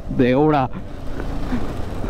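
KTM 390 Adventure's single-cylinder engine running under way, a steady low rumble with some wind noise, after a brief spoken sound about half a second in.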